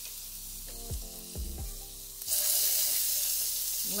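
Glazed raw quail searing in a hot cast-iron skillet with coconut oil: a low sizzle, then a little past halfway a sudden, much louder sizzle as a second bird is laid breast side down in the pan, and it keeps going steadily.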